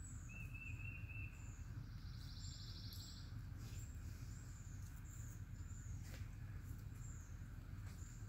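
Faint outdoor ambience of birds calling: repeated short high chirps throughout, a brief warbled trill near the start and a buzzy trill about two seconds in, over a steady low rumble.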